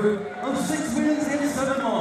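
A man announcing over a public-address system, speaking into a handheld microphone.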